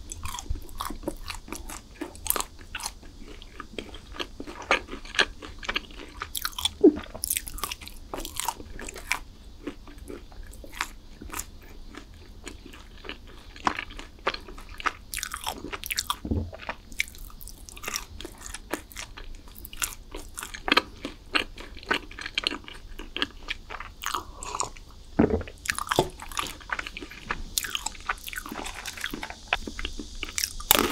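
Close-miked chewing of crunchy chocolate snacks: bites into a chocolate bar followed by steady chewing, full of small crackles with louder crunches scattered throughout.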